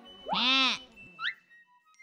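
A cartoon character's voice drawing out the end of a word in one loud, wavering syllable that rises and falls in pitch, followed by a short rising chirp, over soft background music.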